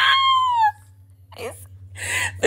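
A high-pitched squeal of laughter that falls in pitch over under a second, followed about a second and a half in by a sharp intake of breath.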